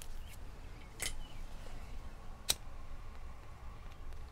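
Two small clicks about a second and a half apart, the second sharper and louder, from a tobacco pipe being handled and relit, over a faint steady background.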